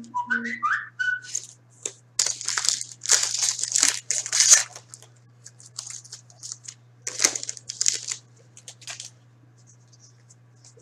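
A few short whistle-like tones at the very start, then a foil trading-card pack being torn open and crinkled in bursts of crackling.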